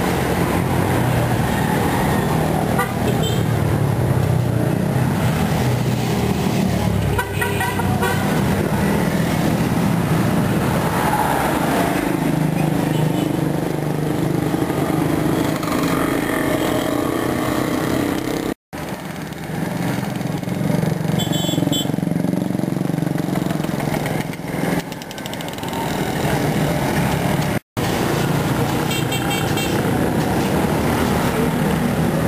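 Roadside traffic: motorcycle and car engines running and passing, with a few short horn toots. The sound cuts out for an instant twice, past the middle and near the end.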